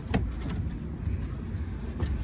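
A car door latch clicks open just after the start, over a steady low rumble.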